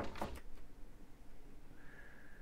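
A short knock just after the start, a door-slam sound effect in playback that is judged wrong for this door, then faint hiss.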